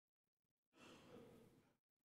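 Near silence, broken partway through by one faint, breath-like exhale lasting about a second.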